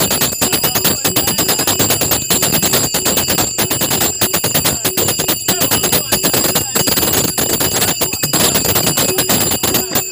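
Dholki drum and brass hand cymbals (taal) played in a fast, even rhythm for a devotional bhajan. The cymbals ring steadily over rapid drum strokes.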